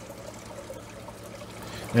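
Water in an aquarium trickling steadily at a low level.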